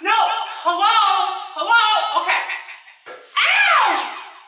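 A woman's loud, animated vocalizing with no clear words, her voice sweeping up and down in pitch in long glides, one falling sharply near the end.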